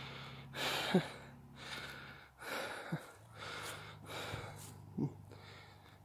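A person breathing hard and audibly, in and out about once a second, out of breath from climbing a steep hill.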